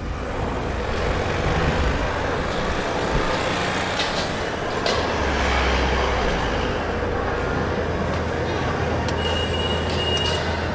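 Busy street traffic: car and motorcycle engines and road noise with a low rumble, indistinct voices in the background, and a brief high-pitched tone near the end.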